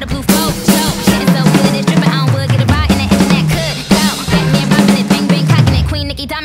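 Acoustic drum kit playing a pop beat, with bass drum and snare strikes, over a pop backing track with a rapped vocal and a stepping bass line.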